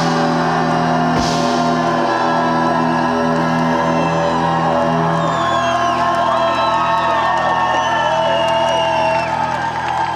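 A live rock band's final chord, held and ringing, with a cymbal crash about a second in. The chord stops about halfway, and the crowd cheers and whoops as the sound dies down.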